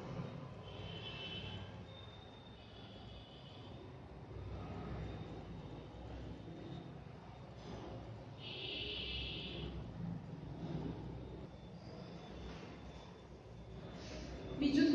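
Faint, steady low background rumble with no speech, broken twice by a brief high-pitched sound: once about a second in, and more strongly at about eight and a half seconds.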